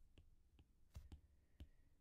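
About five faint, scattered clicks from drawing short strokes on a digital whiteboard, against near silence.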